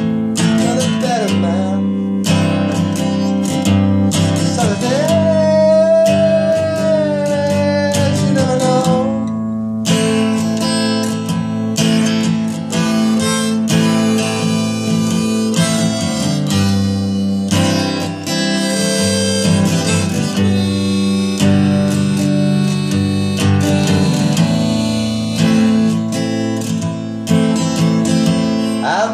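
Instrumental break of a country-folk song: steady acoustic guitar strumming with a sustained, slightly bending melody line over it.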